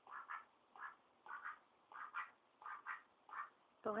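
Indian Runner duck giving soft, short quacks, mostly in quick pairs, repeating about every half second.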